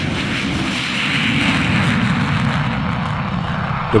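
Jet engines of two Saab JAS 39 Gripen fighters taking off side by side at takeoff power. The jet noise is loud and steady throughout.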